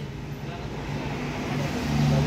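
A motor vehicle engine running steadily amid background noise, louder near the end.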